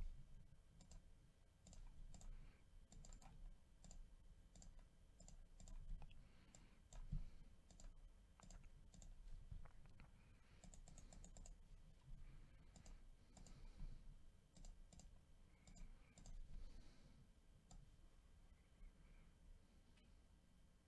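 Faint, irregular clicks of a computer mouse and keyboard keystrokes.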